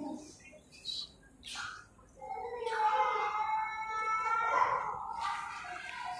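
A long, drawn-out wavering vocal call on a held pitch, starting about two seconds in and lasting about three seconds.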